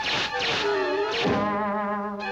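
Cartoon soundtrack music with wavering, sliding tones. Quick whizzing effects of arrows flying past cut across it twice, once about a third of a second in and again just past a second in.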